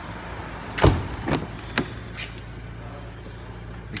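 A car door on a Mercedes-AMG GLC 43 shutting with a thump about a second in, followed by a few sharper clicks of a door handle and latch as the next door is opened.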